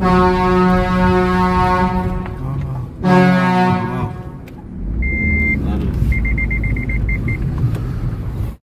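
Vehicle horns sounding inside a narrow rock tunnel as a warning to oncoming traffic: a long steady blast of about two seconds, a second shorter blast about three seconds in, over engine rumble. Near the end a rapid high beeping follows.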